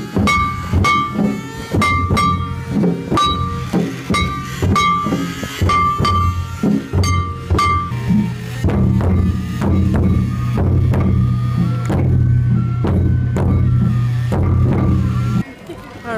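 Live Japanese festival float music: a large taiko drum beaten with wooden sticks and a small brass hand gong struck in rhythm, with sharp repeated strikes.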